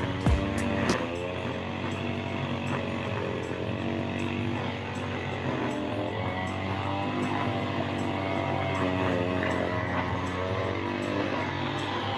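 Brush cutter (grass-cutting machine) engine running steadily at an even speed.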